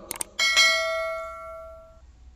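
Two quick mouse-click sound effects, then a single bell ding that rings and fades away. This is the sound effect of a YouTube subscribe-button and notification-bell animation.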